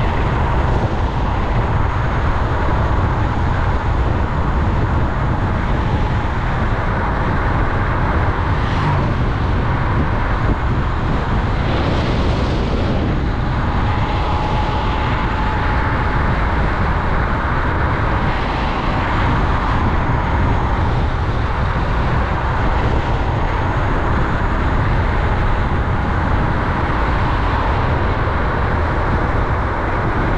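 Steady wind rush on the microphone and tyre rumble from an electric scooter riding at speed on a tarmac road, with a faint steady whine underneath.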